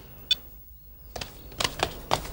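Footsteps of several people in shoes and heeled boots on a tiled porch, an irregular run of sharp clicks starting about a second in. Just before, a single short electronic beep from a mobile phone as a call is ended.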